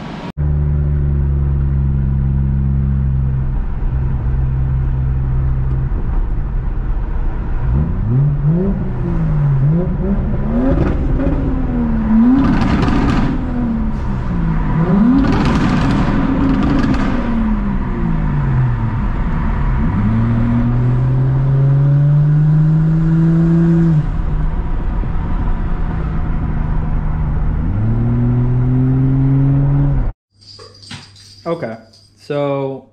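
Turbocharged 1JZ-GTE VVT-i straight-six of a Toyota JZX100, heard from inside the car. It holds steady revs for the first few seconds, then its pitch rises and falls again and again, with bursts of hiss in the middle. Later come two long climbs in pitch as it accelerates, with a drop in between.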